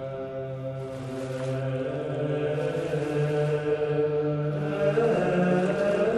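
Soundtrack music of slow chanting voices on long held notes, over a steady low drone, growing slightly louder.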